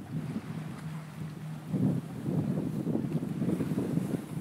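Wind buffeting the camera microphone: an uneven low rumble that swells and drops in gusts.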